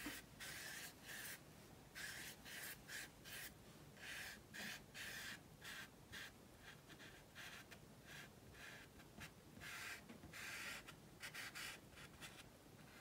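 Faint, irregular strokes of a flat watercolour brush swishing across watercolour paper, about two a second, as wet washes are softened and blended together.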